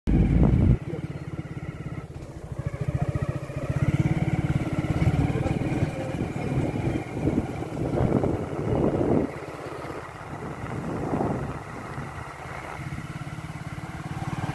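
Small motorcycle engine running steadily at road speed, a fast low pulsing of the exhaust throughout, loudest in the first second.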